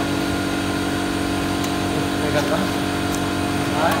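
Steady machine hum with several fixed tones, as of a motor or fan running, under a few faint, sharp ticks of a badminton racket striking a shuttlecock.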